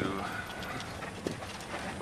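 Vehicle cabin noise while driving on a rough dirt track: a steady low rumble with scattered knocks and rattles from the bumps.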